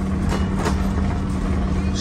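Electric trolley car running along its track, heard from on board: a steady low hum with rumble underneath, and a brief rattle about half a second in.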